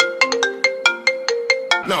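Mobile phone ringtone playing a quick melody of short, quickly fading notes, about five a second.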